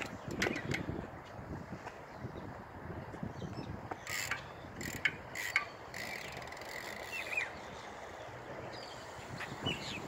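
BMX bike's rear freewheel hub ratcheting as the bike rolls, a run of fine clicks, with a few sharper knocks about four to five and a half seconds in.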